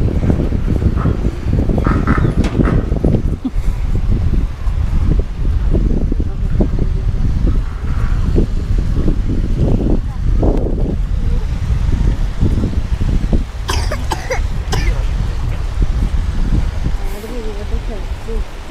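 Wind buffeting the microphone outdoors, a heavy steady rumble, with people talking indistinctly now and then.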